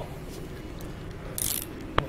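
Body-worn camera rubbing and bumping against clothing during a struggle: a low muffled rumble of handling noise, with a short high hiss about one and a half seconds in.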